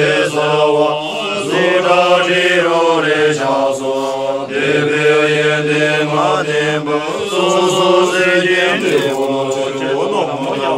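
A group of men chanting a Buddhist prayer together in unison. The chant moves in drawn-out phrases of a few seconds each, with short breaks between them, over a steady low droning note.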